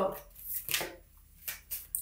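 A deck of animal oracle cards being shuffled by hand: a handful of short, separate papery swishes about half a second apart, with quiet gaps between.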